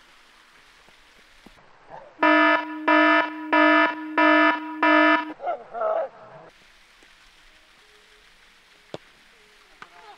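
An electronic buzzer-like tone beeping loudly five times in an even rhythm, about 0.7 s apart, with a brief voice just after. Near the end a single sharp knock.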